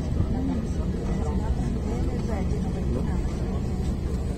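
Steady low rumble inside an airliner's cabin on the ground, with indistinct voices of people talking over it.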